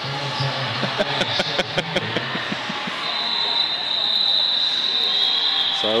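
Sports-hall ambience during a stoppage of play: indistinct voices and scattered sharp clacks, then a steady high-pitched tone that holds for about the last three seconds and drops slightly in pitch near the end.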